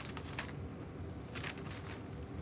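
A few soft, scattered clicks, closest together in the second half, over a low steady hum.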